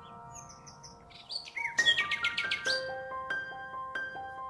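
Slow background music of held notes, with bird chirps mixed in: a few high chirps in the first second, then rising chirps and a quick trill of about eight notes around two seconds in, the loudest part.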